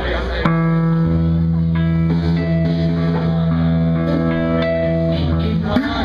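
Amplified electric guitar and bass holding long, ringing notes, the chord shifting every second or two over a deep sustained bass note.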